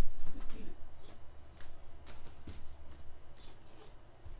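Soft footsteps and light knocks growing fainter as a person walks away from the microphone, over a low rumble.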